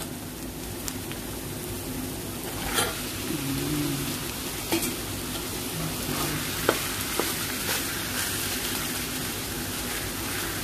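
Minced pork sizzling as it goes into hot oil with sautéed onion and garlic in a wok. A metal spoon scrapes and clinks against the pan a few times while the pork is pushed in and stirred.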